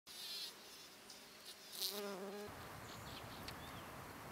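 A bee buzzing in a flower: a short buzz at the start, then a steady wingbeat hum from just before two seconds that cuts off abruptly about half a second later. Faint outdoor background follows.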